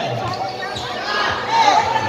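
A basketball being dribbled on a hard court, a few separate bounces, over the chatter of a large crowd of spectators.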